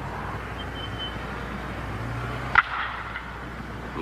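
A bat hitting a baseball: one sharp crack about two and a half seconds in, over a steady background hiss.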